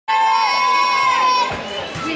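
Several young voices shouting one long, high-pitched held cheer of encouragement for a gymnast's vault run-up. It breaks off about a second and a half in, leaving quieter crowd noise.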